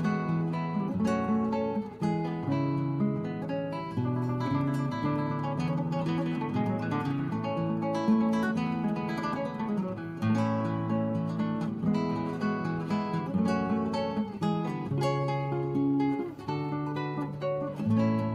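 Background music: acoustic guitar playing a run of plucked and strummed notes at a steady, moderate level.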